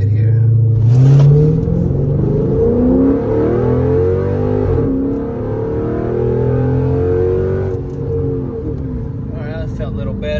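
Dodge Charger SRT8's 6.1-litre HEMI V8 under full-throttle acceleration from a standstill, heard from inside the cabin. The engine note climbs in pitch, drops sharply about five seconds in, climbs again and eases off near eight seconds.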